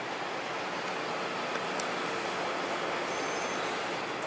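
Steady, even hiss of parking-garage background noise heard through the car's open window, with a brief faint high beep about three seconds in.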